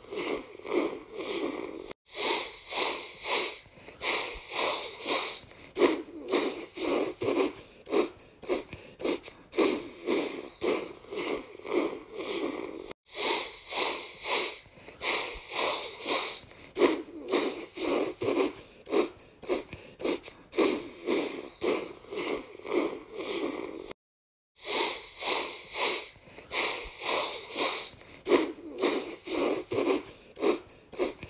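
Marching sound effect: a body of soldiers tramping in step, about two footfalls a second, breaking off briefly three times.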